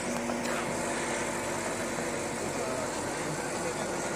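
Crowd chatter over the steady sound of a backhoe loader's diesel engine running, with a constant rushing noise underneath.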